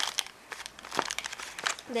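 Paper rustling and crinkling, with several light clicks, as the pages of a handmade scrapbook mini album are turned by hand.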